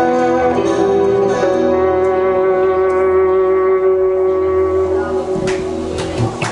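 Live band ending a song on a long held electric guitar chord that rings out and slowly fades. Clapping starts near the end.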